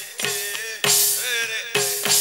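A live band plays an instrumental passage. Strong drum-kit hits come about once a second under a held note and a wavering melody line.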